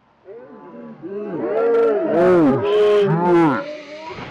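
Several people hooting and cheering in long wordless calls that rise and fall in pitch, overlapping and building from about a second in.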